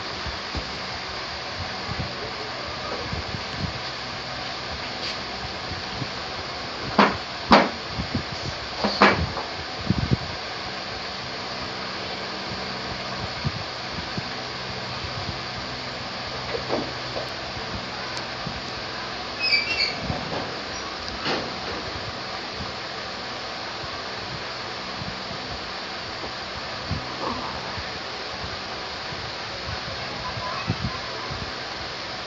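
Steady background hiss, broken by a few sharp clicks and knocks: a cluster about seven to ten seconds in, more around twenty seconds, and one near the end.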